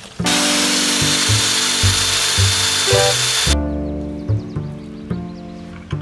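A power drill runs for about three seconds, starting and stopping abruptly, boring into a wooden fence post, over background music with a plucked bass line.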